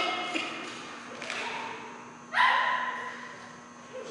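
A dog barking in a large echoing hall: a softer bark about a second in, then a loud bark a little past halfway, each trailing off in the room's echo.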